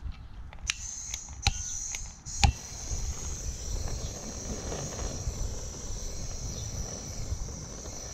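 Handheld gas blowtorch being lit and run: three sharp clicks in the first few seconds, then a steady high gas hiss over a low rumble.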